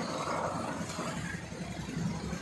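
Falsa berries poured from a wicker basket onto a large steel tray: a dense pattering of small fruit on metal, heaviest in the first second, over a steady rumble of road traffic.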